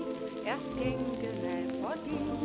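Old shellac 78 rpm record of Hammond organ and small band music: sustained chords with two quick rising sliding notes, about half a second in and near the end. A steady crackle of record surface noise runs under it.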